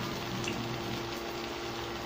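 Breaded pieces of lamb brain frying in hot oil in a pan, a steady sizzle with a faint steady hum underneath.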